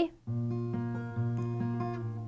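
Capoed steel-string acoustic guitar fingerpicking a G major chord, its notes ringing on, with a fresh bass pluck just over a second in.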